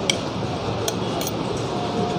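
A spoon and fork clinking lightly against a plate a few times while someone eats, over a steady background noise.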